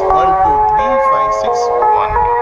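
Recorded breathing-guide music played from a mobile phone: sustained chime-like notes forming a slow melody, stepping to a new pitch every half second or so, with a low gliding voice underneath.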